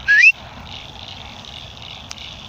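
A short, loud whistle rising in pitch, lasting about a third of a second at the very start, followed by a faint steady background hiss.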